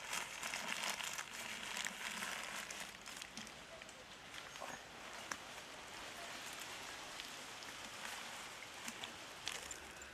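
Newspaper crinkling and rustling in the hands as it is used to grip and lift a hot clay cooking pot, with a few scattered faint ticks.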